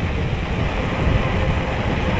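Rushing wind on the microphone and tyre rumble from a mountain bike rolling fast downhill on asphalt, a loud, steady, low buffeting noise.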